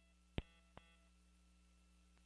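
Near silence on a broadcast audio line with a faint steady hum, broken by a short sharp click about half a second in and a fainter click soon after.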